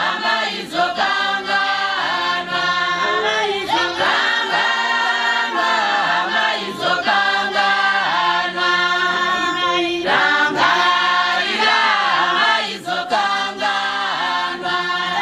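A congregation singing a Shona hymn together, unaccompanied, with many voices blending in continuous phrases.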